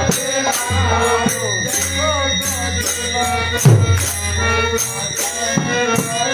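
Bengali kirtan played live: a harmonium holds chords, hand cymbals (kartal) clash in a steady beat, and a khol drum gives deep strokes that slide down in pitch, twice in the second half. A man's singing voice rises and falls over the instruments in the first half.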